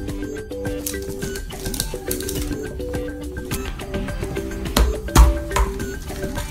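Background music of short repeated notes, with two sharp clicks near the end, the second louder, as a plastic surprise-egg capsule is pulled open.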